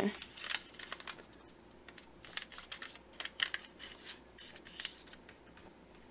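A square sheet of origami paper being folded diagonally and creased by hand: soft, crisp paper rustles and crackles, coming irregularly.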